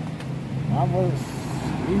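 A steady engine hum under a single short spoken word about a second in; just before the end the hum steps up to a higher pitch.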